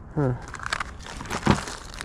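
A clear plastic bag of small plastic action figures crinkling as it is handled, with a sharp click about one and a half seconds in.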